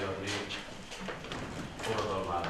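A man's voice speaking Hungarian in a steady, declaiming delivery.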